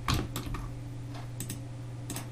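Several irregular, sharp clicks from a computer mouse and keyboard, over a steady low electrical hum.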